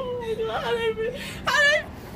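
A person's high-pitched wordless vocal sound: one long held whining tone lasting about a second, then a short, louder, higher cry about one and a half seconds in.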